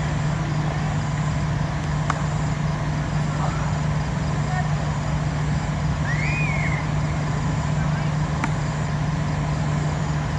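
Steady background noise with a constant low hum, broken by two sharp clicks and a short faint call about midway.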